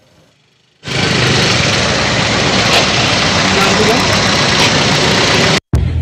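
Loud street noise with running vehicle engines that starts about a second in and cuts off sharply near the end.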